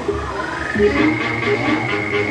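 Loud electronic music from a paredão sound system: a synth tone slides up and then holds a high note, over rapidly pulsing lower notes.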